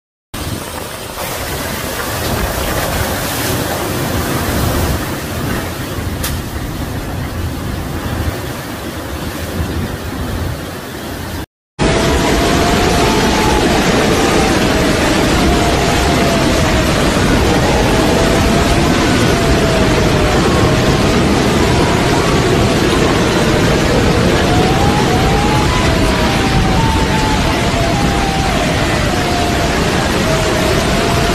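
Hurricane wind and heavy rain: a loud, dense, steady rush. After a brief cut about eleven seconds in, a wavering whistle of wind rises and falls over the rush.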